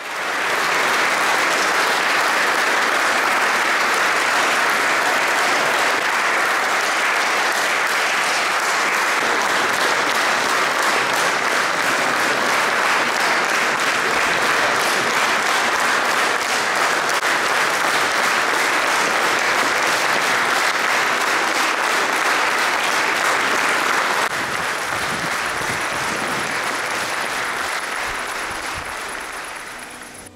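Audience applauding steadily, a little quieter after about 24 seconds and fading out near the end.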